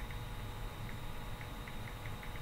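Faint clicks of computer keyboard typing over a low steady hum, scattered at first and coming in a quicker run in the second half.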